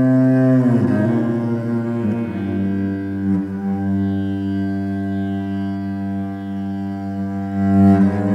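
Cello bowed in long drawn-out notes. About a second in, the pitch slides down, then a single low note is held for the rest, played in a rock cave.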